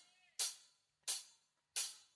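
A drummer's count-in at the start of a song: three short, bright ticks evenly spaced about two-thirds of a second apart, out of silence.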